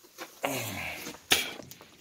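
A man's low wordless murmur falling slightly in pitch, then a short sharp noise about a second and a half in.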